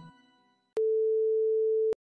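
The tail of organ music fades out, then a single steady electronic beep at one mid pitch sounds for just over a second, starting and stopping with a click, followed by dead silence.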